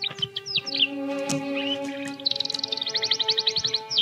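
Soft background music of held chords, with a bird's short high chirps in the first second and a fast, high trill through the second half.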